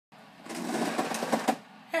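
Handling noise from an iPod Touch being adjusted as it is propped up to record: rustling with a few sharp clicks and knocks, lasting about a second.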